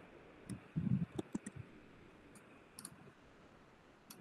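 A few scattered, sharp clicks of a computer mouse and keyboard as a link is pasted, with one soft low bump about a second in.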